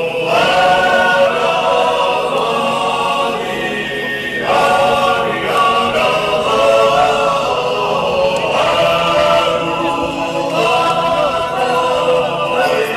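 A group of voices singing a chant-like hymn in long, held phrases, with new phrases starting about four and a half seconds in, again near eight and a half, and near eleven.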